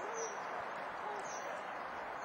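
Birds calling: repeated short, high chirps from small songbirds and two short, low hooting notes, one at the start and one about a second in, over a steady background hiss.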